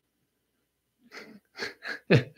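A person laughing under their breath, starting about a second in as three short puffs.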